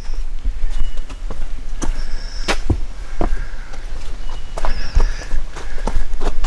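Footsteps of a hiker walking on a dirt and stone forest trail: irregular steps and scuffs over a steady low rumble on the microphone.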